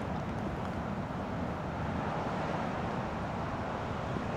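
Steady low outdoor background rumble with no distinct events, the kind of noise left by distant traffic or idling engines.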